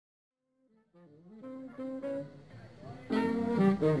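Jazz band with saxophone starting to play: quiet melodic horn lines come in about a second in, and the full band enters much louder about three seconds in.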